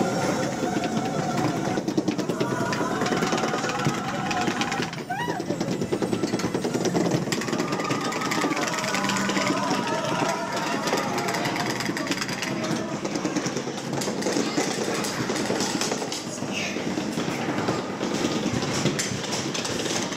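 Log flume chain lift clattering steadily as the ride log is pulled up the incline, with voices over it.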